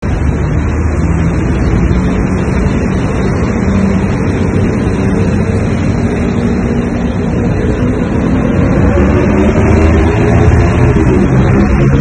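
Motor vehicle traffic on a city road, with engines running loudly and steadily close by. One engine's pitch rises near the end.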